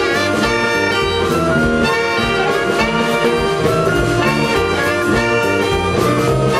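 Saxophone band with flutes and drum kit playing a jump boogie in jazz style, sustained horn lines over a steady drum beat.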